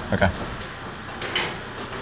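Fortune cookie baking machine running steadily, with two faint short clicks as the owner works at its hot griddle plates.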